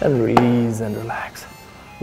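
A man's voice holding one drawn-out syllable for about a second, falling in pitch, as the background music cuts off at the start. A brief click sounds inside it.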